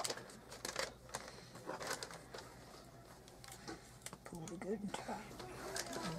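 Gift-wrapping paper rustling and crinkling as it is folded up over a boxed present, with a few sharp crackles in the first couple of seconds and softer rustling after.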